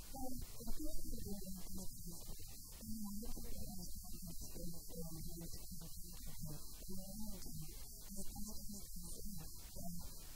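A woman talking into a handheld microphone, her voice muffled and indistinct, over a steady low electrical hum.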